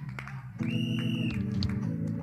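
Keyboard or organ playing a held chord, coming in about half a second in, with a higher note sounding over it.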